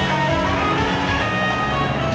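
Live rock band playing an instrumental passage at full volume: electric guitars over drums and cymbals, dense and unbroken.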